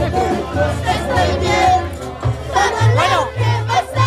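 A group of people singing and shouting together, close to a microphone, over band music with a steady low bass line.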